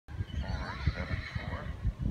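A horse whinnying: one wavering call lasting about a second and a half, over low thumping.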